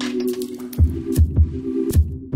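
Instrumental hip-hop beat with no vocals: a sustained low synth chord, joined about a second in by deep kick-drum hits and light clicking percussion.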